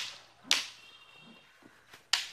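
Long kolthari fighting sticks striking each other: one sharp crack about half a second in, with a brief ringing after it.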